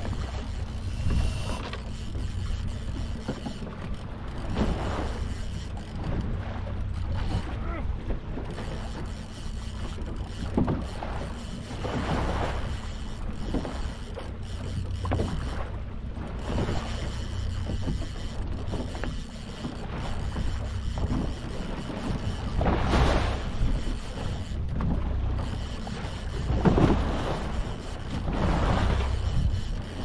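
A fishing boat's outboard motor runs steadily at trolling speed, with wind and waves against the hull rising and falling in irregular surges, the loudest about two-thirds of the way through.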